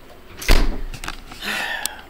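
A single loud, deep thump about half a second in, followed by a shorter rustling noise near the end.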